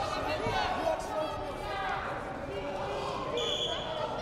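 Wrestling shoes squeaking and bodies slapping on the mat as two wrestlers hand-fight in a tie-up, with shouted voices in the hall. A high, steady squeak is held for well under a second near the end.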